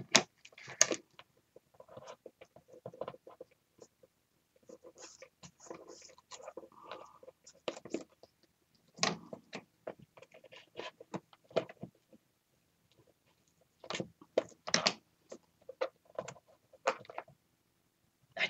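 Faint, scattered clicks and rustles of paper being handled and worked, as a hole in a paper craft piece is made bigger for a light bulb.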